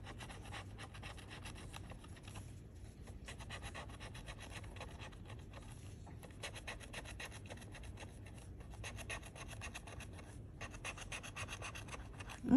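Metal bottle opener scraping the coating off a paper scratch-off lottery ticket: a faint, continuous run of rapid short scratching strokes.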